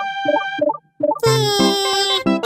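Cartoon soundtrack music and sound effects: a quick run of short plopping notes, a brief gap, then a long, slightly sagging tone that starts just after a second in.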